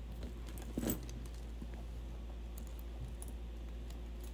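Metal chain and charms on a handbag clinking as the bag and its strap are handled, with one louder short clatter just under a second in. A steady low hum runs underneath.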